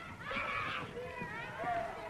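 Children shouting and calling out at play, several high voices overlapping, loudest in the first second.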